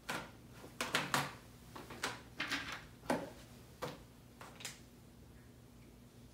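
Marker pen rubbing and scratching on an acrylic tube in a run of short strokes, stopping about five seconds in.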